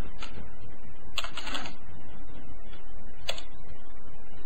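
A few keystrokes on a computer keyboard, typing a word: one near the start, a quick run of them about a second in, and a single sharp one near the end. A steady low hum runs underneath.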